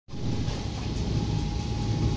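Soap extrusion line with its conveyor belt running: a steady low machine hum with a thin, steady whine above it.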